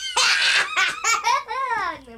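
A young child laughing loudly in several high-pitched bursts, the last one rising and then falling in pitch.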